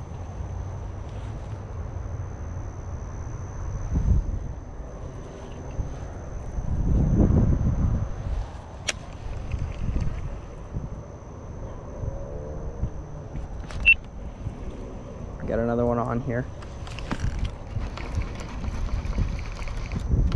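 Low rumble of wind on a body-worn microphone, with a few handling knocks and clicks. Late on comes a brief wordless hum of a man's voice.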